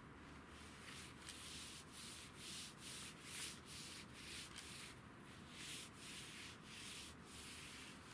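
Hands rubbing back and forth over a large sheet of paper, a faint run of short dry swishing strokes, about two a second, that stops shortly before the end.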